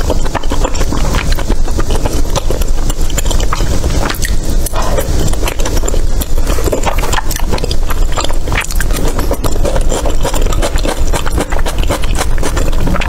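Close-miked chewing of chewy rice cakes in thick sauce (tteokbokki): loud, wet, sticky mouth sounds with many quick irregular clicks and smacks.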